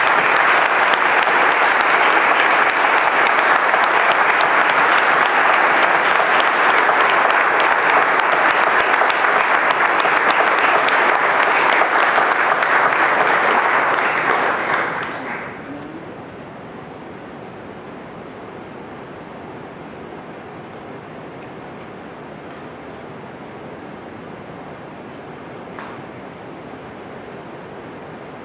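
Audience applauding loudly for about fifteen seconds, then dying away over a second or so to a low steady background noise.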